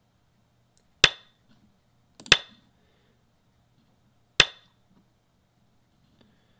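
Fox Go client's stone-placement sound effect: three sharp clacks, each with a short ring, about a second in, just over a second later, and two seconds after that, one for each stone played on the board.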